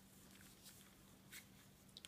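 Near silence: a faint steady low hum, with a few faint, brief rustles from hands working a rubber-band figure over a cardboard paper towel tube.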